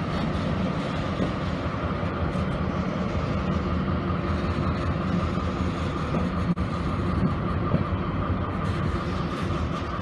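Freight train of covered hopper wagons rolling past behind a diesel locomotive: a steady rumble of steel wheels running on the rails.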